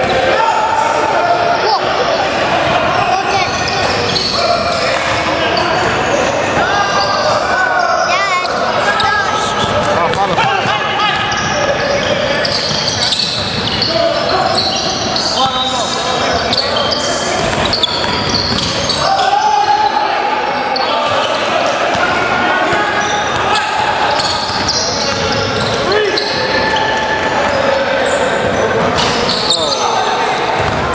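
Basketball bouncing on a hardwood gym floor during play, with players' voices calling and talking throughout, echoing in the hall.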